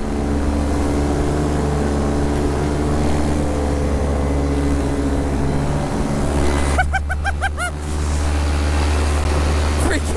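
A paramotor's small two-stroke Vittorazi Atom engine running steadily at flying power, with a brief dip about six seconds in.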